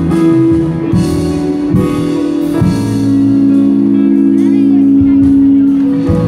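Live band music over a PA system: a sustained chord with low bass notes held under it. A few drum hits fall in the first three seconds, after which the chord rings steadily.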